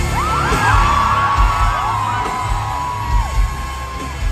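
Rock band playing live through a large PA: heavy kick drum and bass thumps under a long held high note that cuts off near the end, with crowd whoops over the start.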